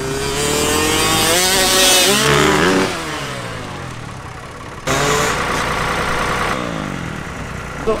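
Small 65cc two-stroke dirt bike revving hard up a jump ramp, its pitch rising for about two seconds, then dropping away as the bike leaves the lip and flies. About five seconds in, a second run starts suddenly: the engine runs high again, then falls off near the end.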